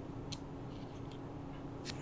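Faint ticks of a digital caliper being handled, its sliding jaw opened for a measurement: a few light clicks, one about a third of a second in and one near the end, over a faint low steady hum.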